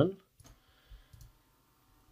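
Faint computer mouse clicks: one about half a second in, then a couple more around one second.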